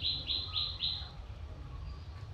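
A bird calling: a quick series of short, even, high notes, about four a second, that stops about a second in.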